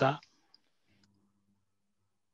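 The end of a spoken word, then near silence with a faint low hum and two tiny clicks about half a second and a second in.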